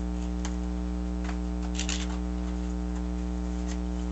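Steady electrical hum throughout, with scattered soft rustles and crinkles of gloved hands pressing a fabric bellows liner and its card stiffeners into place. The loudest cluster of crinkles comes just before the two-second mark.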